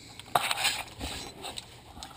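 Handling noise from a handheld camera being moved about under a car: a light click about a third of a second in, then soft rustling and scraping.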